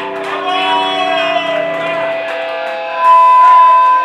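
Live rock band with electric guitars, the chords ringing out as the song comes to an end. The low end drops away about halfway through, and a loud, held high note sounds through the last second.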